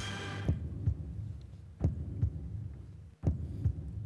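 A heartbeat sound effect: pairs of low thumps about every one and a half seconds over a steady low hum, the dating show's tension cue while the women decide. It opens with a short bright chime that rings out quickly.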